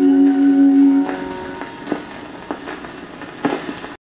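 A 78 rpm shellac dance-band record ends on a held chord that stops about a second in. The stylus then plays on through the groove's surface noise, a steady hiss with crackle and a few louder clicks.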